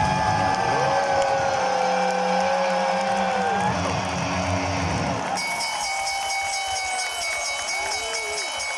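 Arena crowd cheering, with voices holding long wavering notes that trail off about halfway through. From about five seconds in, a faint fast, even high ticking comes in over the crowd noise.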